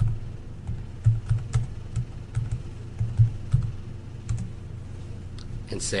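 Computer keyboard being typed on: irregular runs of keystrokes, stopping about four and a half seconds in.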